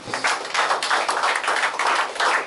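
Hands clapping: a quick, uneven run of sharp claps from a few people, several a second, starting a moment in.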